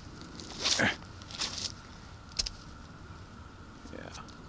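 A few short scuffs and rustles of handling on an asphalt-shingle roof edge, the loudest about three-quarters of a second in, and a sharp click a little after two seconds, over a faint steady hum.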